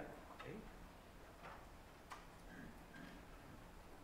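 Near silence: room tone with a few faint, sparse clicks.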